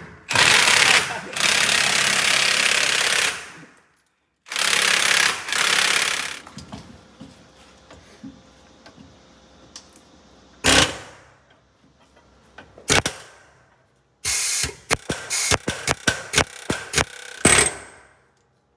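Pneumatic air hammer running in two long bursts of about three and two seconds, then a few short single bursts and a quick string of short bursts near the end, worked on a bus's front wheel hub.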